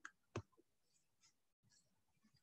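Two faint clicks about a third of a second apart near the start, typical of a computer mouse being clicked; otherwise near silence.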